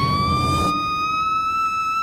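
A young girl's voice in one long, high scream, held on a slowly rising pitch. A music bed underneath stops less than a second in.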